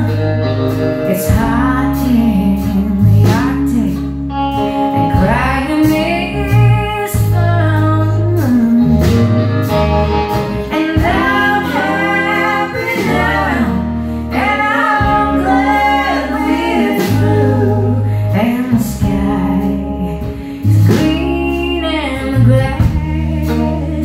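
Live band playing a slow country song: electric bass and drums under a lead melody with bending, sliding notes, between sung verses.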